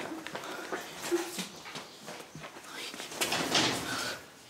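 Footsteps and the rustle of clothes and sofa cushions as a person hurries in and throws herself onto someone lying on a sofa, with soft whimpering voice sounds. The loudest rustle comes near the end.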